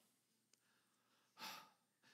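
A man's single short, breathy sigh about a second and a half in, with near silence around it: a mock-weary sigh acting out reluctance.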